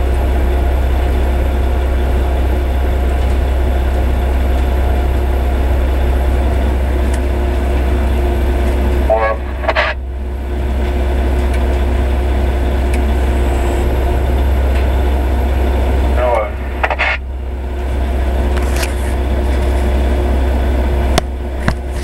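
Heavy truck's diesel engine heard from inside its cab, a loud steady low drone as the truck pulls away from under the loading bin. The engine sound dips briefly twice, about nine and sixteen seconds in, with a short wavering higher sound just before each dip.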